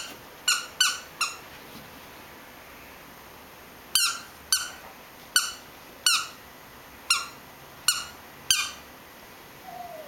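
Squeaker in a plush squirrel toy, squeaked by a Cavachon puppy biting down on it: short, sharp squeaks, each dipping slightly in pitch. Three come quickly in the first second and a half, then after a pause seven more, about half a second to a second apart.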